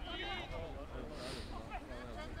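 Shouts and calls of several football players during play, overlapping voices carrying across an open pitch, over a steady low rumble.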